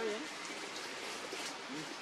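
Steady outdoor background hiss, with a short wavering voice-like call right at the start and another brief one near the end.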